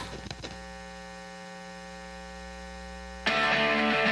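Guitar amplifier hum and buzz, the typical noise of a live amp just after a guitar cable jack is plugged into its input, with a few crackles at the start. A little over three seconds in, loud rock music with electric guitar suddenly starts.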